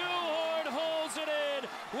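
Speech only: a raised voice calling the play, over steady background noise.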